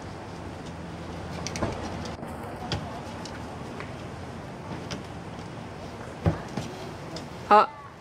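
Raccoons scrabbling and bumping on plastic wheelie-bin lids as they climb over them and squeeze under a raised lid: scattered light clicks and a louder knock about six seconds in, over a steady background hum.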